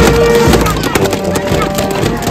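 A brass band of trombones and saxophones playing held notes, with sharp drum beats keeping time.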